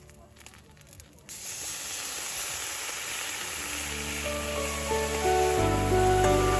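A hot skillet on a gas camping stove sizzling hard and steadily. The sizzle starts suddenly about a second in, after a few faint clicks, and soft music fades in over it in the second half.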